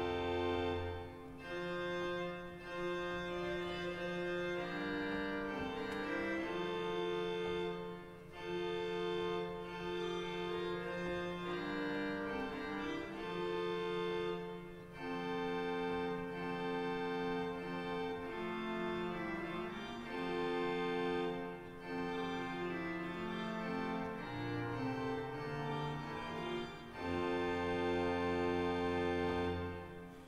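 Gustav Heinze romantic pipe organ (opus 100) playing slow, sustained chords in short phrases, with a low pedal note at the start and again near the end. It is demonstrating the Harmonia aetherea, a four-rank string mixture on the third manual made up of septime, prime, tierce and quint ranks.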